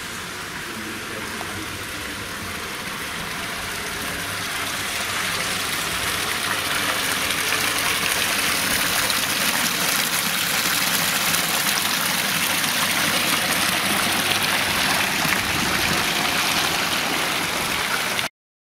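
Courtyard fountain's water jets splashing into the basin: a steady rushing hiss that grows louder over the first several seconds, then holds steady.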